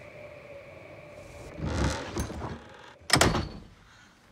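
A trailer's sound effects: a short swell of noise, then a single sharp slam about three seconds in with a brief echoing tail.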